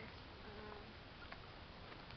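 Faint garden ambience: a low steady hiss with insects buzzing, a brief faint bird note about half a second in, and a few light clicks.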